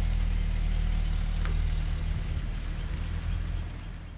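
Volkswagen Golf wagon's engine running, heard from close behind the car as a steady low hum, fading over the last second or so as the car pulls away.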